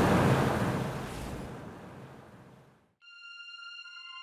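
Noisy sound-effect tail from a title animation fading out over nearly three seconds, then a brief silence, then a soft electronic outro jingle of steady synthesiser tones beginning about three seconds in.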